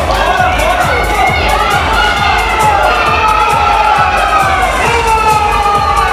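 Crowd shouting and cheering, with children's voices among them, over background music with a steady beat.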